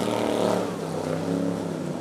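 Inboard engine of a vintage mahogany speedboat running at speed, a steady drone over the hiss of its spray, slowly fading as the boat moves away.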